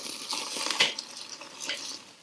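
Ribeye steaks sizzling as they sear over the direct heat of hot charcoal, building their crust, while steel tongs turn them on the grill grate. A few light clicks of the tongs on the grate come through the hiss.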